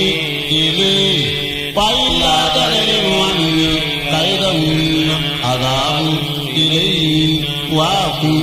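A man's voice chanting a religious recitation in long held notes, with melodic turns between them.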